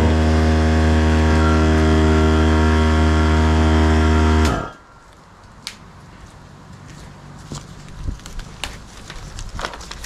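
A loud, steady low-pitched hum on one unchanging pitch with many overtones, lasting about four and a half seconds and cutting off suddenly. After it come light clicks and rustles of a utility knife and vinyl sheet being handled.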